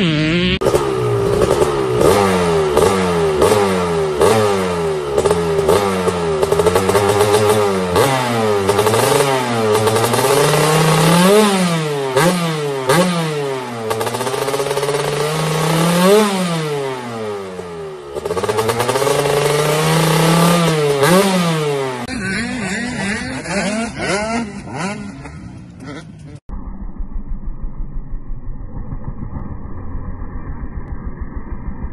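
Dirt bike engines revving, the pitch climbing and dropping over and over as the throttle is opened and shut. The sound changes at cuts between short clips, and near the end a quieter engine runs with an even pulsing.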